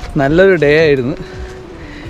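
A man's voice, drawn out for about a second with a wavering pitch, then a faint steady held tone.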